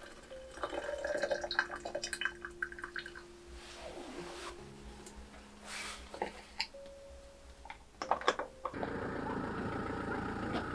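Hot water poured from a stainless steel kettle into a rubber hot water bottle, with scattered clinks and splashes. Near the end this cuts to a steady even noise.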